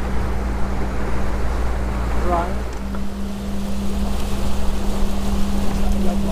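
Water rushing along the hull of a Dehler 30 OD sailing yacht moving fast, semi-planing at nearly 9 knots under spinnaker, with wind noise over it. A steady low hum runs underneath and briefly drops out about halfway through.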